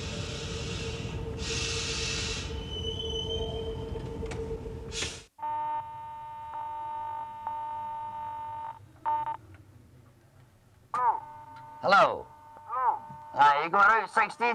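Old Glasgow Underground train running through the tunnel: a steady rumble and hiss with a steady whine and surges of hiss, cut off suddenly about five seconds in. Then a steady electric signal tone, like a telephone line tone, broken twice, and near the end several short warbling chirps.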